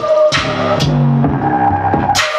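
Hip-hop beat playing from an Akai MPC Live through studio monitors: sharp drum hits about every half second over a looped sampled melody with held tones and a bass line that steps in pitch.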